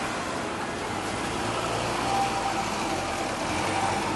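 Road traffic on a city street: a steady wash of car engine and tyre noise with a low hum.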